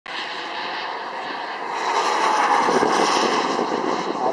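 Radio-controlled model jet's turbine engine in flight, a rushing jet noise that swells to its loudest about halfway through as the jet passes, then eases slightly.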